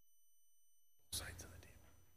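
Near silence, then about a second in a person whispers briefly.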